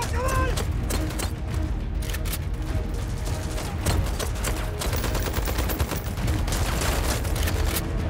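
Film battle soundtrack: dense, overlapping rifle and machine-gun fire throughout, over a steady low rumble.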